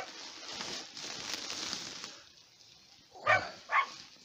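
Bubble-wrap packaging rustling and crackling as the metal-detector coil is lifted and handled, for about two seconds. Near the end, two short, sharp calls about half a second apart.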